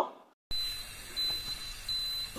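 Faint, high-pitched electronic beeping from an OPOS CookBot V3 electric pressure cooker, a thin tone that breaks off and resumes every half second or so. It starts about half a second in, after a brief silence, while the cooker's display reads OFF at the end of its cooking program.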